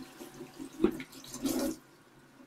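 Water running from a kitchen tap into a stainless-steel sink, with a sharp knock just under a second in. The water cuts off shortly before the end.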